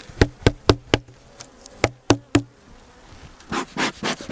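A wooden hive feeder held over an open hive is knocked sharply about seven times, in two quick runs, to shake off the honeybees clinging to it, over the steady buzz of the bees. A brief rustling follows near the end.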